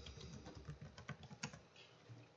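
Faint computer-keyboard typing: a quick run of keystrokes as a password is entered, stopping about one and a half seconds in.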